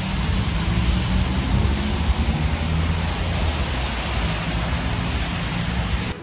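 City street traffic noise: a steady, loud, even hiss with a low rumble underneath.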